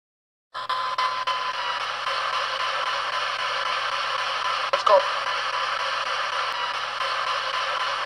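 Hacked digital FM pocket radio stepping across the FM band as a spirit box, giving a steady hiss of static that starts about half a second in, with a brief snatch of station sound about five seconds in.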